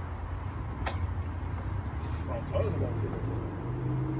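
Steady low rumble with faint voices in the background and a single sharp click about a second in.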